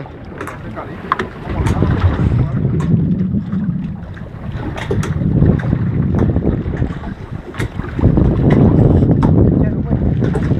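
Wind buffeting the microphone aboard a small open boat at sea, a low rumble that swells in three gusts, with scattered sharp knocks.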